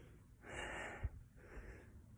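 A man's breath close to a phone microphone, one soft breath lasting about half a second, followed by a faint low knock just after it.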